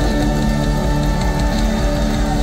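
A large live rock band playing, with electric guitars, piano, sousaphone and drums sounding together in sustained, steady chords.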